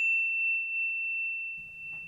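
A bell-like ding, struck just before, rings on as one high, steady tone that slowly fades away. It is a sound-effect chime accompanying a title card.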